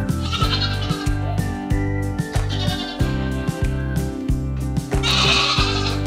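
Nigerian Dwarf goat bleating three times over background music with a steady beat: about half a second in, near the middle, and near the end, the last call the loudest.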